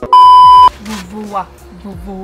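Loud, steady high-pitched test-tone beep lasting about half a second, the tone that goes with TV colour bars, cutting off sharply. A person's voice follows it.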